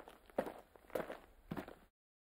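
Footsteps dubbed onto the stop-motion walk of a LEGO minifigure, even and unhurried, about one step every 0.6 seconds: three steps.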